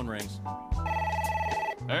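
A telephone ring sound effect: one trilling ring about a second long, in the middle, over sustained low notes from the band.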